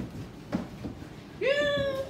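A child's high-pitched drawn-out cry or squeal, held at one pitch for about half a second near the end, after a few dull thumps of running footsteps on a wooden floor.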